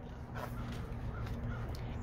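A hardcover picture book's page being turned, a soft paper rustle over a steady low hum.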